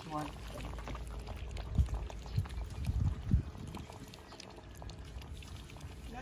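Several Shih Tzu puppies lapping and licking at a metal tray, a busy run of small wet clicks and smacks, with a few dull low thumps near the middle.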